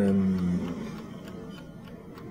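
A man's drawn-out hesitation 'euh', held on one slowly falling pitch for the first half-second or so, then a quiet pause of room tone.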